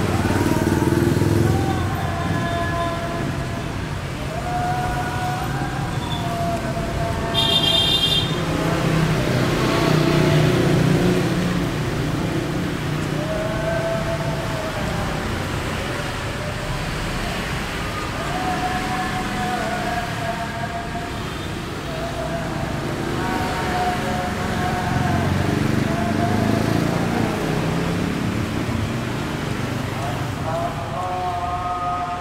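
Busy street noise with traffic rumble. Over it runs a wavering high melody that comes and goes in phrases of a second or two, with a short high beep about eight seconds in.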